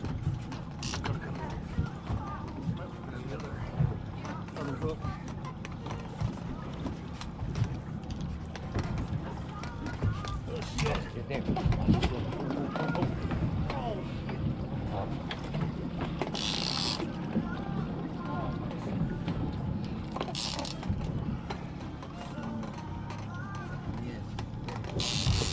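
Triple Mercury 250 outboards idling with a steady low hum, under faint voices and a couple of short splashy bursts later on.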